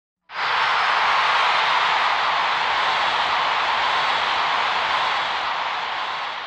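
A steady rushing hiss of noise that starts just after the beginning and eases off slightly toward the end.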